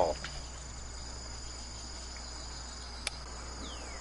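Steady high-pitched chirring of crickets over a low, constant hum, with a single short click about three seconds in.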